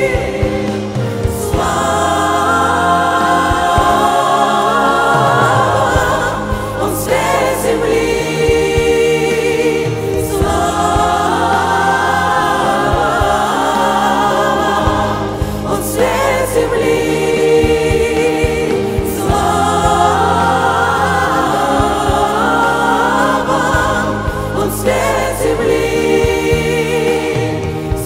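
A female lead singer and a male vocal group singing a slow Christmas worship song with piano accompaniment, in long held phrases of a few seconds each with short breaks between them.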